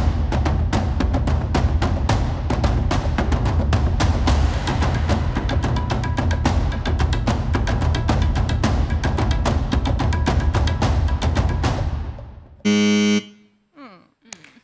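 Game-show suspense music: a rapid, steady drum roll with timpani under it, building the tension before an answer is revealed. It stops about a second and a half before the end, and a short, loud buzzer tone sounds.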